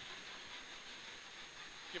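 Faint, steady cabin noise of a Peugeot 106 GTi rally car at speed: a low hiss of engine and road noise with no distinct revving or impacts.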